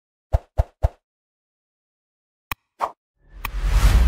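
Sound effects of an animated like-and-subscribe end card: three quick pops in the first second, then two mouse clicks a little past halfway, then a whoosh that swells up near the end.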